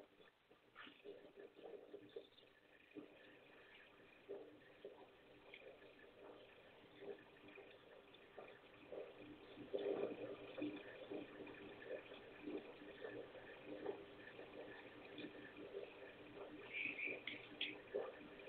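Near silence on the line, broken by faint, scattered sounds that grow a little louder from about ten seconds in.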